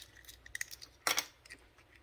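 Faint small clicks of plastic and metal as the screw-off tip of a 12-volt cigarette-lighter plug is taken apart to pull out its glass fuse, with one sharper click about a second in.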